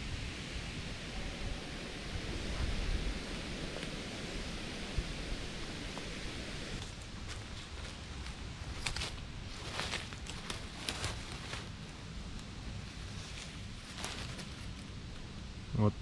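Dry leaf litter and twigs on a forest floor rustling and crackling under feet and hands, over a steady outdoor hiss. The sharper crackles come in the second half.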